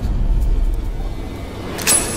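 Film soundtrack sound effects: a deep low rumble that starts suddenly, with a sharp hit near the end.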